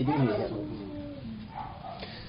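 A man's voice speaking briefly, then trailing off into one long, slowly falling drawn-out sound.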